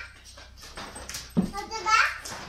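A dog vocalising briefly, mixed with a child's voice, and a soft thump about one and a half seconds in.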